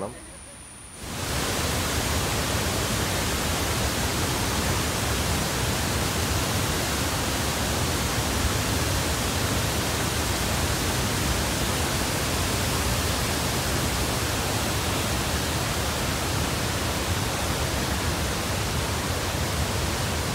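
Waterfall in full spate and the rapids below it: a steady rush of water that starts about a second in.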